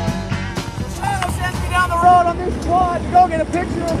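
Music ends in the first second. A voice follows over the low rumble and wind noise of riding a quad ATV that is being towed behind a car, its engine dead because it ran out of gas.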